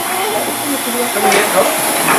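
Steady hiss of steam escaping from a steam locomotive, with faint voices under it.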